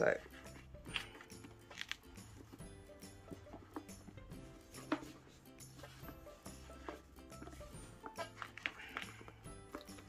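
Quiet background music with steady sustained notes, under faint scattered rustles and soft knocks as a book is handled inside a crocheted cotton cover.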